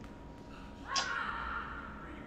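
A short breathy vocal sound, like a gasp, starting sharply about a second in and trailing off.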